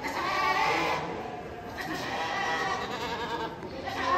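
Angora goats bleating: long, wavering calls, the strongest in the first two seconds, with more bleating after.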